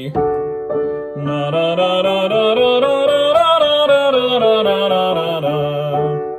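Upright piano chord followed by a man singing a scale that climbs steadily and comes back down, with piano accompaniment. It is a warm-up run of about an octave and a ninth, the kind used to find a singer's range.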